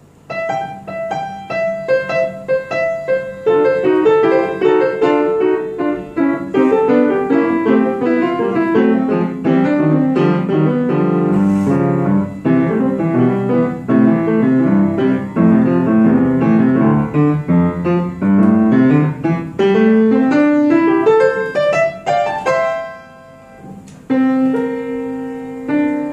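Solo piano played at a brisk pace, with fast runs of notes. Near the end a long run climbs upward, the playing pauses briefly, then resumes with held chords.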